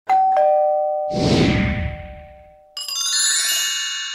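Editing sound effects for a channel logo animation: a two-note descending chime like a doorbell ding-dong, then a swelling whoosh about a second in, then a shimmering bell-like sparkle of many high tones just before three seconds in that rings on and fades.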